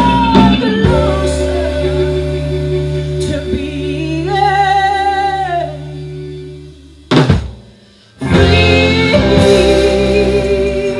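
Female singer with a live blues band, singing over guitar, bass and drums. Midway she holds one long wavering note, then the band drops almost to silence, a single sharp hit lands about seven seconds in, and the full band comes back in about a second later.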